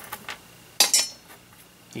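Small metal screws and hardware clinking as a hand sifts through a pile of them: a few light ticks, then a short metallic clatter just under a second in.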